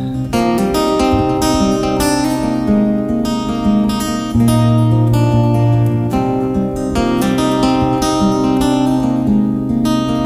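Acoustic guitar strummed in a steady rhythm during an instrumental passage of a live song, with no vocals. A deep bass note rings out for a couple of seconds from about four seconds in.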